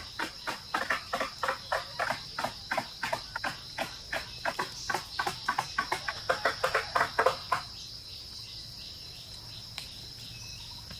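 Insects, crickets, buzzing in a steady high drone, over a fast run of sharp knocks, about three to four a second, that grow louder and then stop about three-quarters of the way through.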